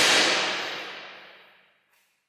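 A transition whoosh sound effect: a sudden rush of noise that fades away over about a second and a half, its hiss sinking as it dies, then silence.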